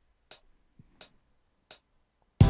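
FL Studio's metronome counting in before recording: three short, sharp clicks evenly spaced about two-thirds of a second apart.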